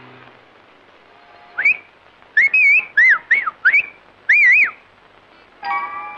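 A person whistling several short warbling phrases that slide up and down in pitch. Near the end comes a brief musical chime of several notes together.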